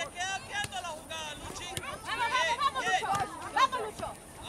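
Several spectators' voices talking and calling out over one another, with a background of crowd chatter.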